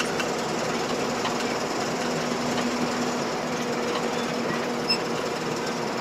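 Steady engine and road noise of a moving car, heard from inside the cabin, with a constant low hum.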